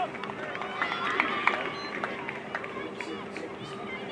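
Several voices of Australian rules football players calling and shouting to each other on the field, with a few sharp knocks, the loudest about one and a half seconds in, over a steady low hum.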